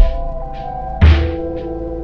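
Slowed-down, chopped-and-screwed hip-hop instrumental: sustained keyboard chords with two heavy kick-drum hits, one at the start and a bigger one about a second in.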